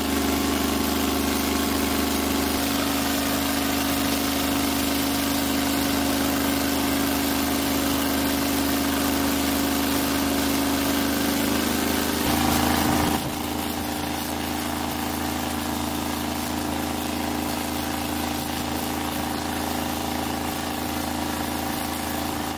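Airplane engine running at high power to drive wind through a metal tunnel onto a fence panel: a loud, steady drone with rushing air, first at 90 mph wind. About twelve seconds in the drone changes in tone and drops slightly in level, with the wind now at 110 mph.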